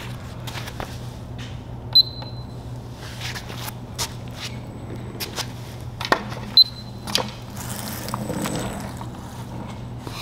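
Self-balancing two-wheeled scooter with a foot stepping around it: a steady low hum, scattered clicks and knocks, and two short high beeps about four and a half seconds apart.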